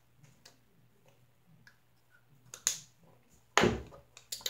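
Faint scattered clicks and taps from a lipstick tube being handled, with a sharper click past halfway and a loud short bump near the end.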